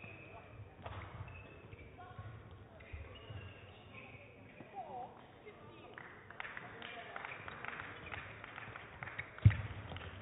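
Badminton rally: shuttlecock hits from the racquets and shoes squeaking on the court floor, getting busier from about six seconds in. A single heavy thump near the end is the loudest sound.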